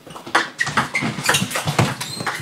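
Table tennis ball in a fast doubles rally, struck by rubber-faced bats and bouncing on the table, making a quick run of sharp clicks several times a second.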